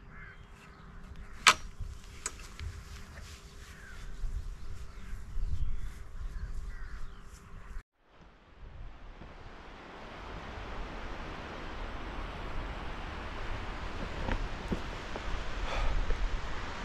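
Outdoor ambience with birds calling and a single sharp click about a second and a half in. After a brief cut to silence about eight seconds in, steady surf and wind noise on the beach that slowly grows louder.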